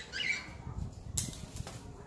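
Blue-fronted amazon parrot taking a piece of food from a hand and biting into it, with one sharp crunch a little past halfway.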